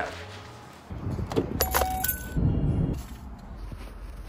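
Boots stepping through snow, a few footfalls in the second and third seconds.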